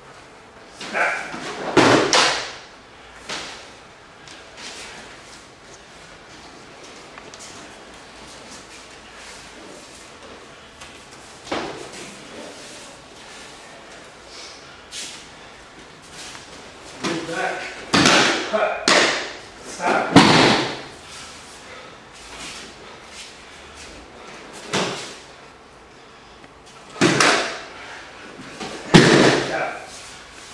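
Loud, short vocal bursts and thuds in four separate clusters, with quiet room tone between them.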